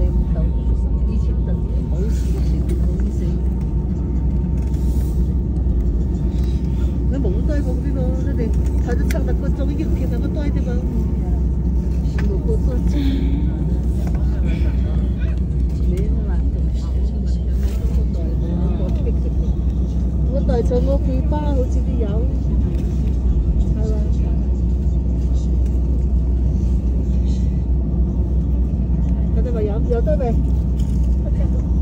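Steady low rumble inside an airliner cabin on the ground after landing, with passengers talking in the background.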